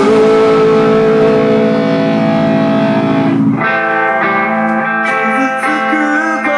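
Live rock band with electric guitars: a sustained chord rings out, then about three and a half seconds in the low end drops away and a lighter guitar part with separate picked notes takes over.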